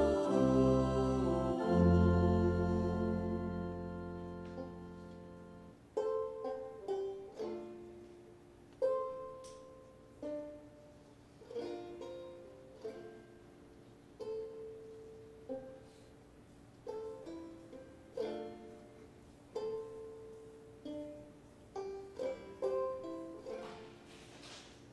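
A held chord rings out and fades over the first few seconds. Then a banjo picks slow, sparse notes in short clusters every second or so, each note dying away quickly.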